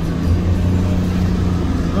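Steady low drone of a car driving along a wet road, engine and tyre noise heard from inside the cabin.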